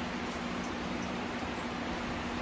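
Room tone: a steady hiss with a faint, even low hum.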